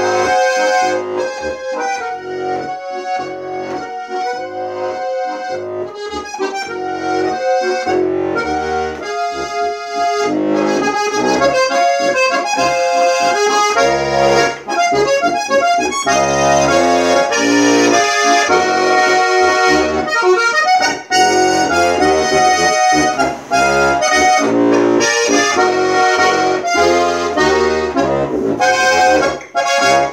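Steirische Harmonika, a diatonic button accordion tuned B♭–E♭–A♭–D♭, played solo: an Alpine folk tune on the treble buttons over a steady alternating bass-and-chord accompaniment. It is a little softer for the first several seconds, then fuller.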